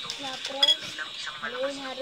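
Metal spoon clinking against a ceramic cereal bowl of milk: a sharp clink right at the start and a louder, ringing one just over half a second in.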